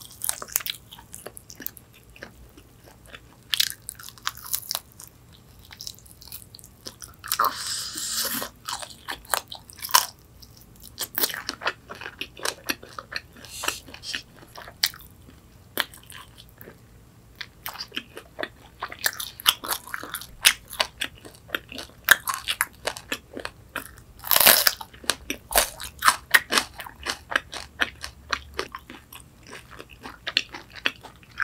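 Close-up eating sounds of fried chicken wings being torn apart, bitten and chewed: many irregular crisp crunches and wet mouth clicks, with one louder burst about three-quarters of the way through.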